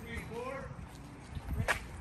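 Indistinct talking from people nearby, over a steady low rumble on the microphone.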